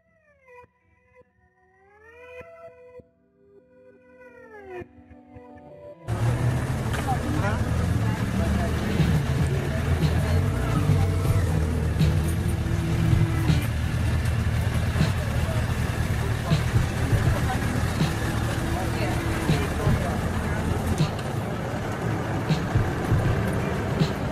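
A few faint gliding, meow-like calls. About six seconds in, a loud outdoor mix starts suddenly: a motorcycle engine running, with people talking around it.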